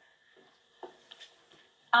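Near silence with a few faint, brief sounds, then a voice begins right at the end.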